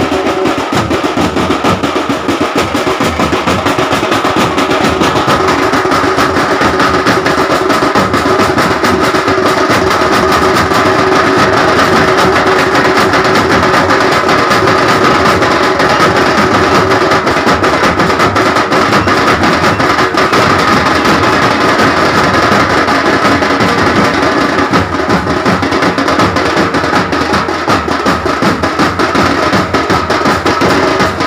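Loud drum music with dense, fast drumming that runs on without a break, with a couple of steady held tones.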